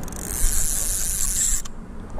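Spinning reel cranked fast, a steady high whirring hiss that stops about a second and a half in: reeling against a loaded rod to set a circle hook in a striking catfish.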